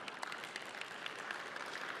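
Audience applauding: a quiet, steady patter of many hands clapping.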